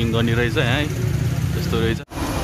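People's voices over a steady low vehicle engine rumble.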